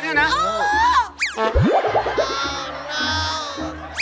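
Comedy sound effects over a short music cue: about a second in, a very fast falling glide sweeps from high to low, followed at once by a quick rising glide. A couple of seconds of music follow.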